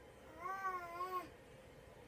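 A baby's voice: one drawn-out, wavering cry-like call lasting about a second, starting about half a second in.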